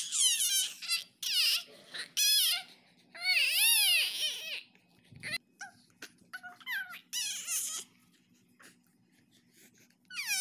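A baby shouting in high-pitched squeals, about five bursts in the first eight seconds, the longest a drawn-out squeal that rises and falls about three to four seconds in. A faint steady hum runs underneath.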